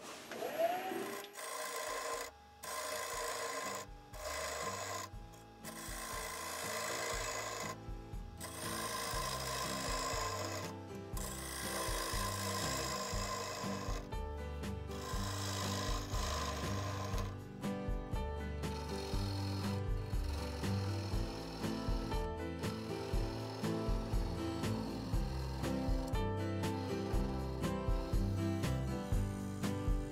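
A bowl gouge cutting into a spinning teak bowl blank on a wood lathe, hollowing out the inside: a steady rough cutting sound broken by several short gaps.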